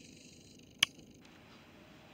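A single short, sharp click a little under a second in, over a faint steady hiss.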